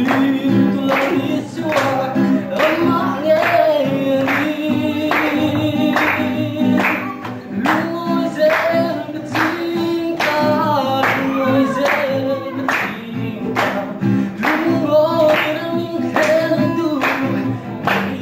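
A group of voices singing a worship song to a strummed acoustic guitar, with hand-clapping on the beat about twice a second.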